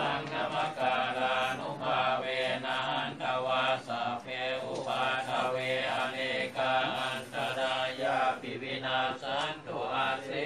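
Group of Buddhist monks chanting Pali blessing verses together in a steady, rhythmic recitation.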